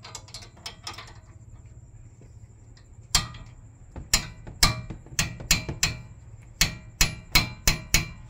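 Sharp metal knocks on a wrench seated on the front stabilizer-link nut of a Honda Mobilio as the loose nut is knocked fully tight. After a few light clicks there are about eleven hard strikes from about three seconds in, irregular, two or three a second.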